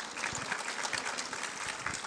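Audience applauding: many hands clapping together in a dense, steady stream of claps.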